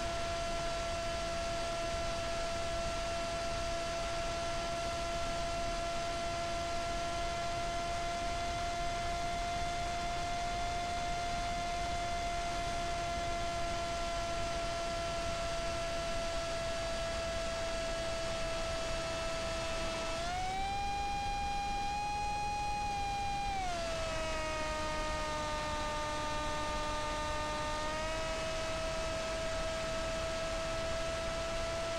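Brushless electric motor and propeller of a small flying wing running at cruise, heard from on board as a steady whine over wind hiss. About twenty seconds in the whine rises in pitch for a few seconds as the motor speeds up, then drops lower than before for a few seconds, then settles back to its cruise pitch.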